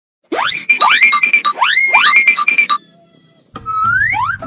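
Cartoon-style sound-effect jingle: four rising "boing" sweeps over short, bright repeated beeps for about two and a half seconds. After a brief pause, another rising sweep starts near the end.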